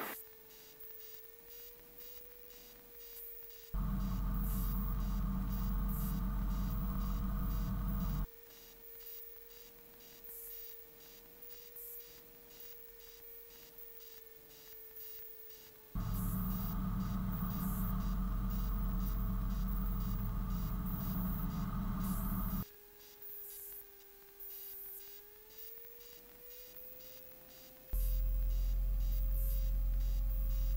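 Van's RV-12 light aircraft on final approach, heard from the cockpit: a steady whining tone that drifts slowly lower and then rises about three-quarters of the way through. Three stretches of much louder engine and wind rumble start and stop abruptly.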